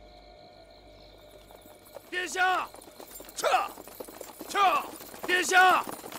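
Horses approaching, with riders giving short, sharp shouts in quick succession from about two seconds in, some in pairs, roughly one a second.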